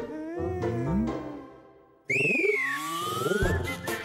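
Playful cartoon music and sound effects with sliding, whistle-like tones. A first phrase fades away about halfway through, then a sudden new sliding sound starts as the box springs open.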